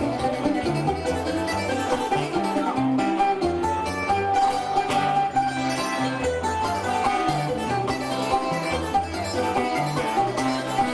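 Cuban punto guajiro accompaniment: guitar and other plucked strings over a moving bass line, playing a steady instrumental passage without singing.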